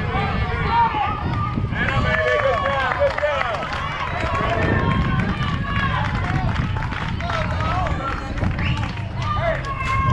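Overlapping high-pitched voices of young softball players and spectators calling and shouting, busiest about two to four seconds in, over a steady low rumble.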